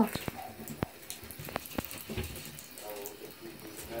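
Shallow bathwater splashing and trickling in a tub, with scattered small clicks and taps in the first couple of seconds as wet ferrets scramble about.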